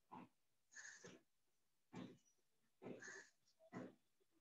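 Faint squeaks and scratches of a marker pen on a whiteboard as a word is written, in about five short strokes.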